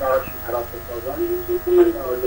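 Indistinct voice over a steady electrical buzz.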